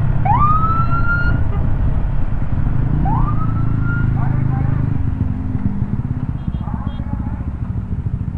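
Wind buffeting the camera microphone and scooter engine noise while riding at speed, a steady low rumble. Two short rising whoops, like the rider's shouts, come about half a second and three seconds in.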